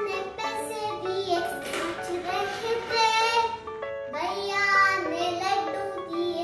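A young girl singing a children's nursery rhyme.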